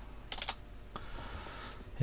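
Computer keyboard keys tapped in a quick cluster of clicks about half a second in, typing a stock name into a search box, followed by a soft hiss for about a second.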